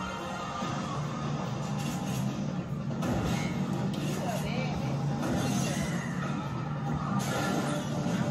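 A television programme playing in the room: music with faint voices under it, steady throughout.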